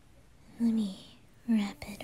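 A woman's voice in short falling-pitched syllables, twice, with a brief sharp click near the end.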